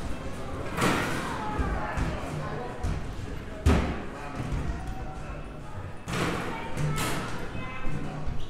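A child's small basketballs thudding against the backboard and rim of an arcade basketball hoop machine, with several thuds, the loudest a sharp bang about midway.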